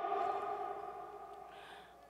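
Public-address loudspeakers ringing on after the lecturer's voice stops, a steady hum of a few tones that fades away over two seconds: the echo tail of the sound system.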